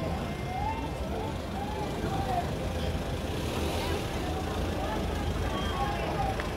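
City street traffic at night: a steady low rumble of cars on the road, with faint distant voices over it.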